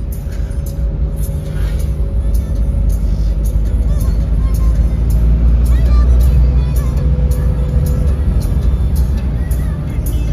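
Steady low rumble of a car's engine and tyres on the road, heard from inside the cabin, growing louder for a few seconds around the middle.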